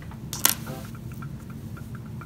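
One sharp click about half a second in, as a 1943 steel penny is picked up from the pile and knocks against the other coins.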